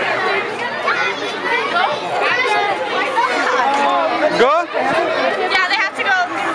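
Many children's voices talking and calling out over one another in a continuous babble of chatter, with a brief knock a little over four seconds in.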